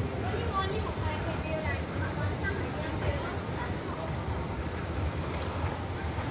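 Outdoor city ambience: a steady low rumble with wind buffeting the microphone, and faint voices of passers-by in the background.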